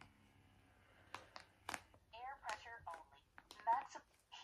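Eye Oasis 2 eye massager's recorded voice prompt talking faintly, after a few sharp clicks from its buttons being pressed about a second in.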